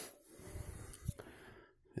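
A person's breath close to the microphone right at the start, then faint rustling with a small click about a second in.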